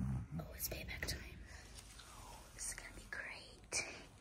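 Faint whispering in short hushed bursts, with a brief low rumble right at the start.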